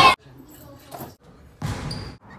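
Basketball bouncing on a hardwood gym floor, with a sharp knock about a second in, echoing in the gym. There is a louder, deeper stretch of gym noise near the end.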